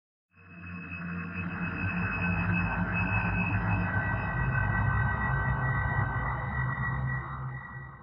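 Arturia Pigments software synthesizer playing the 'Hydrosis' texture preset from the Space Probe pack, a granular, sample-based sound. It swells in a moment after the start as a hissing wash, with several thin high tones ringing steadily over a low drone.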